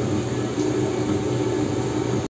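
Steady engine rumble of Pinaka rocket launcher trucks driving past in the parade, heard through a television speaker.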